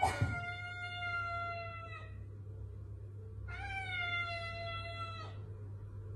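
Tabby cat giving two long, drawn-out meows of about two seconds each, the second starting about three and a half seconds in, each sliding slightly lower in pitch at its end.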